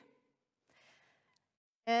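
A pause in a woman's talk: a faint intake of breath about a second in, then her speech resumes near the end.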